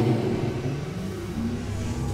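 Ride audio inside the Dinosaur dark ride: a steady low rumble under the ride's soundtrack music, starting abruptly.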